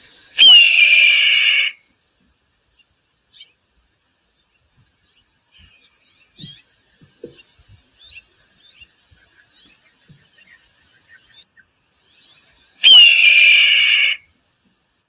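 Red-tailed hawk's scream, played back from a recording: a harsh call that drops steeply in pitch at the start, then holds for about a second. It comes twice, about half a second in and again near the end, with only faint scattered sounds between.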